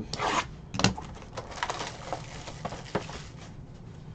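Cardboard trading-card box being handled and opened: rustling and scraping against the table and hands, with a louder rustle at the start and a sharp tick a little under a second in, then lighter rustling.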